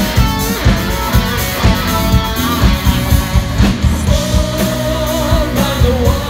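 Live rock band played through stage speakers: guitar and drum kit keeping a steady beat, with a singer's voice coming in on a held line about four seconds in.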